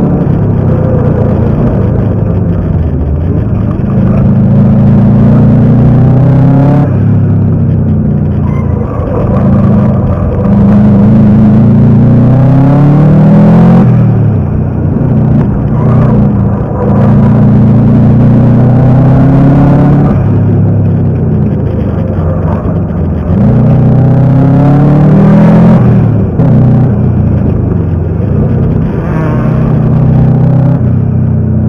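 Turbocharged flat-four engine of a Subaru Impreza GC8 race car heard from inside the cabin under hard acceleration on track. The revs climb for a few seconds and then drop sharply, over and over, as the car accelerates, shifts and slows for corners.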